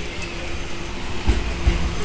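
Tokyo Metro Ginza Line train arriving into the underground platform, a steady low rumble from the approaching train, with two heavy low thumps about a second and a half in.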